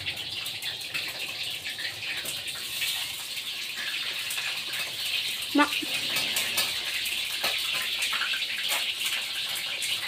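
Heavy rain falling on a corrugated metal roof: a steady hiss dotted with many small ticks of drops.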